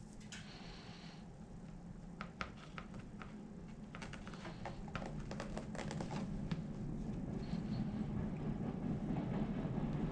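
Hand patting and pressing loose potting soil in a clear plastic tray, giving scattered light taps and soft rustles over a low steady hum.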